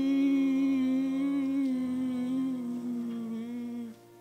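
A person humming one long held note that wavers slightly and sinks a little in pitch, stopping just before the end, over a soft steady drone.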